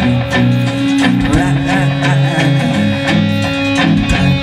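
A rock band playing live: electric guitars, bass guitar and a drum kit together at a steady loud level, with regular drum hits over sustained bass notes.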